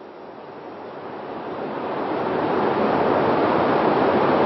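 A steady rushing noise, like wind or surf, that swells over the first two to three seconds and then holds at full strength.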